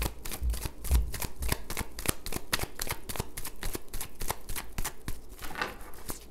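A deck of oracle cards being shuffled by hand: a quick, even run of card clicks, about six a second, with a few soft thuds of the deck in the hands in the first second or so.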